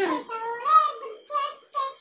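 A small boy singing a desi song unaccompanied in a high child's voice, in short phrases with a brief pause near the end.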